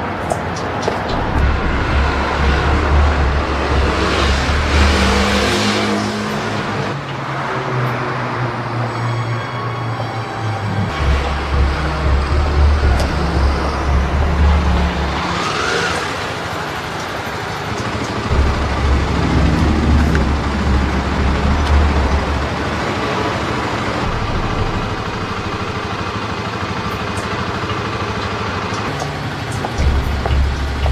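A film soundtrack mix: music with a heavy, repeating low bass, blended with vehicle-like engine noise and a couple of rising whooshes.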